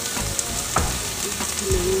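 Chopped red onions frying in olive oil in a nonstick pan, a steady sizzle over low heat, with saffron just added.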